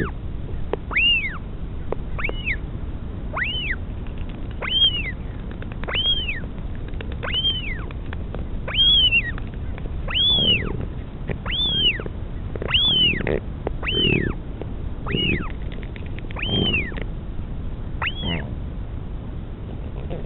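Northern royal albatross chick begging for food: a high whistled call, each one rising and then falling, repeated about every 1.3 seconds, about fourteen times. In the second half, a lower sound comes with several of the calls.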